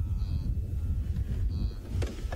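Wildebeest in a nearby herd calling: two short calls about a second apart, over a steady low rumble.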